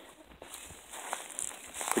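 Faint footsteps on dry garden soil and weeds, with a few light clicks.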